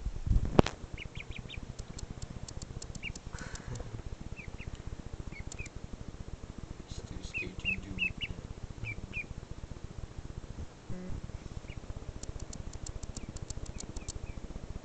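Duckling peeping in short, high, rising chirps, in small scattered groups over the first nine seconds or so. A loud thump about half a second in.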